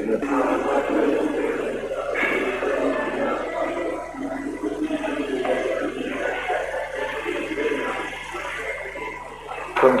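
Indistinct background chatter of several voices mixed with general hall noise, with no single clear speaker.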